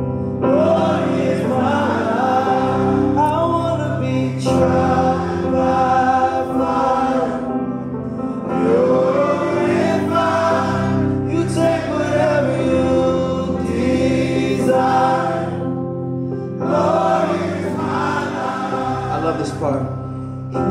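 Live gospel worship music: sustained keyboard chords under singing voices, a group of voices singing together in phrases a few seconds long.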